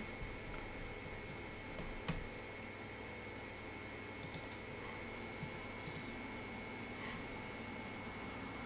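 A few sparse, faint clicks of a computer mouse over a low steady hiss with a thin, faint high whine.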